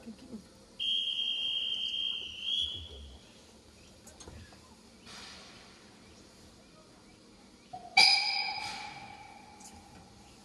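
A hand whistle blows one steady, high note for about two seconds. About five seconds later the narrow-gauge steam locomotive's whistle sounds once, loud and lower, and fades away over about two seconds: the signals for the train's departure from the station.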